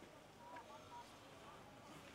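Near silence: faint room tone in a pause between sentences of speech.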